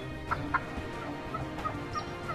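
Wild turkey clucking: two sharp clucks about a third and half a second in, then a few softer, shorter notes.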